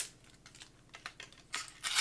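Clear plastic protective wrap crinkling and tearing as it is peeled off a plastic monitor-stand neck. Faint scattered crackles build to a louder rustle in the last half second.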